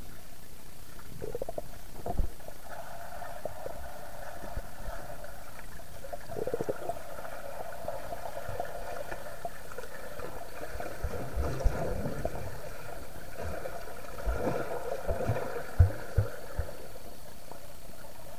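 Pool water heard from under the surface: a muffled steady rumble with bubbling from swimmers' strokes and kicks. A few dull thumps stand out, one about 2 seconds in and a cluster near the end, the loudest about 16 seconds in.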